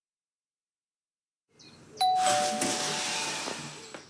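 Dead silence for the first second and a half. About two seconds in, a doorbell chimes a two-note ding-dong, high then lower, ringing out and fading.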